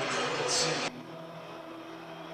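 Stadium crowd noise after a goal, a steady rushing din that drops off abruptly about a second in, leaving only a faint background.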